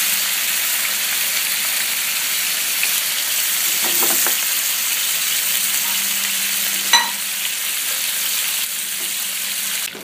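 Pangas fish pieces shallow-frying in hot oil in a non-stick pan, a steady sizzle. About seven seconds in there is a single sharp clink with a short ring.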